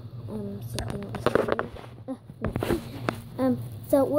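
A child's voice speaking briefly and indistinctly, with a few sharp knocks and a short rustle about two and a half seconds in, over a steady low hum.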